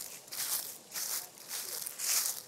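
Short bursts of rustling, scraping noise, about two a second.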